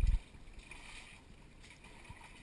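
Water poured over a dog's coat, trickling and splashing faintly into a galvanized metal tub. A brief low, dull thump opens it.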